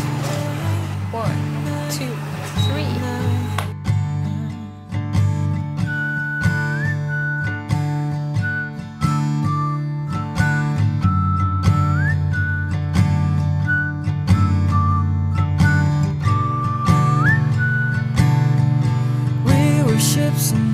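Background music: acoustic guitar over sustained low notes, with a thin whistle-like melody that slides up every few seconds. The arrangement changes about four seconds in.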